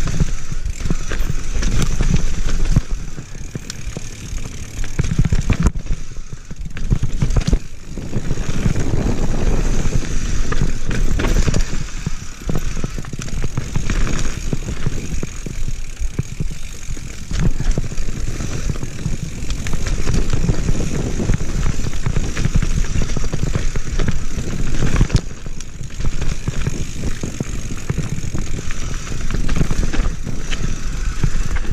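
Mountain bike riding fast down a dirt forest trail: a continuous rumble of wind on the microphone and tyres on dirt, with frequent clatter and knocks as the bike runs over roots and bumps.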